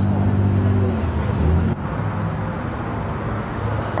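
A steady low drone of a running engine, with a hum and background noise; it is slightly weaker from about halfway through.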